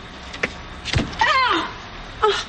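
A woman crying out in distress, a falling wail just after a dull thud about a second in as her fist strikes the body of a car.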